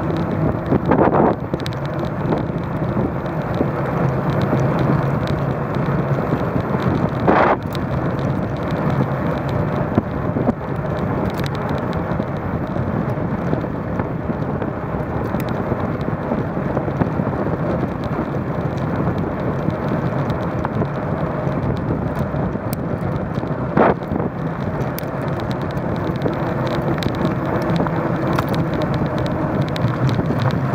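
Continuous wind and road noise from a bicycle ride on asphalt, heard through a bike-mounted camera's microphone, with a few sharp knocks as the bike goes over bumps.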